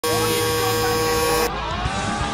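Several steady humming tones for about a second and a half, then a sudden cut to a drifting car's engine revving, its pitch rising and falling.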